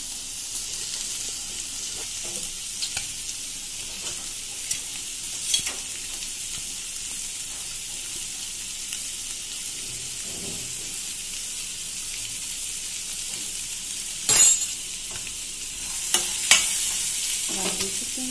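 Chickpeas frying in a kadai on a gas stove: a steady sizzling hiss, with a few sharp knocks, the loudest one late on.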